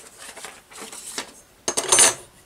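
Faint paper rustling, then near the end a stainless steel ruler is set down on the craft table with a short metallic clatter.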